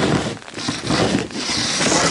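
Snow shovel scraping and pushing through snow, a rough scraping noise in two strokes with a short break about half a second in.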